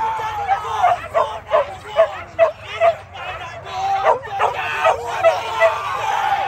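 Hunting dogs barking and yelping in a quick run of short barks, about two a second, with crowd voices and shouts around them.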